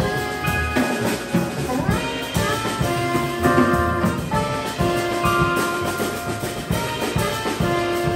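Live jazz-funk quartet playing: a soprano saxophone leads with long held notes over keyboard, upright bass and drum kit.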